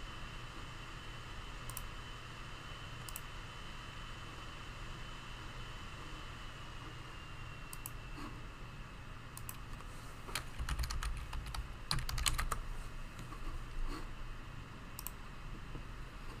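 Typing on a computer keyboard: a few scattered keystrokes at first, then a quick run of keystrokes and clicks from about ten to fourteen seconds in, over a low steady hum.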